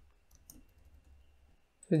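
A few faint clicks of computer keyboard keys as code is typed into an editor, with a short word of speech at the very end.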